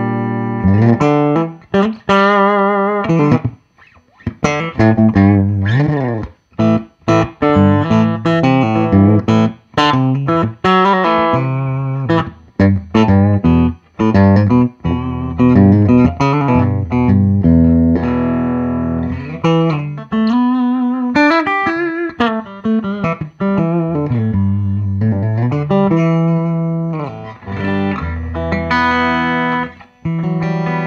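A modded Squier Classic Vibe '60s Stratocaster electric guitar playing single-note lead phrases mixed with chords. Some held notes waver with vibrato, and there are short breaks in the playing about 4 and 6 seconds in.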